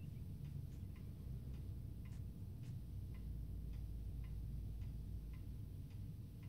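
Faint, regular ticking, about two ticks a second, over a low steady hum.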